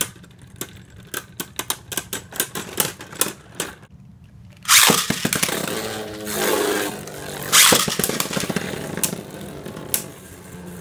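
Caynox C3 4Flow Bearing and Cognite C3 6Meteor Trans Beyblade Burst tops spinning in a plastic stadium, clacking sharply again and again as they strike each other for the first four seconds. After a brief lull, a loud, continuous grinding whirr of a spinning top scraping on plastic starts about five seconds in and runs on.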